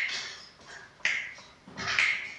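Finger snaps keeping a steady beat, about one a second, each a sharp click that dies away quickly.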